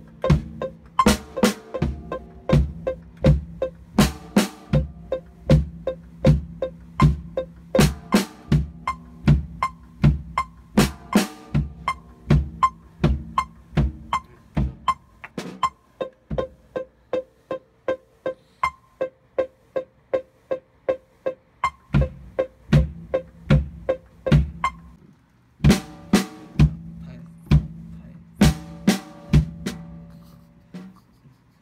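Acoustic drum kit played in a steady beat, about two strokes a second, with loud cymbal crashes on some strokes. The playing eases to lighter strokes in the middle, stops briefly about 25 seconds in, then comes back louder.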